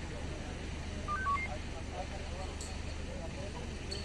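Voices murmuring over a steady low hum; about a second in, four short electronic beeps, each at a different pitch, follow one another quickly.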